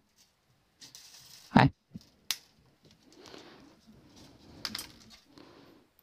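A bass string being cut with cutters past the tuning post: one sharp snip a little over two seconds in, then faint rustling and a small click as the cut string end is handled at the tuner.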